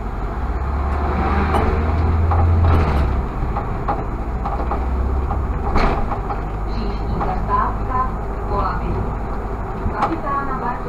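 Irisbus Citelis CNG city bus running under way, heard from the driver's cab: a low drone that builds for about three seconds as the bus pulls along, then drops back and carries on steadily. A single sharp knock sounds about six seconds in.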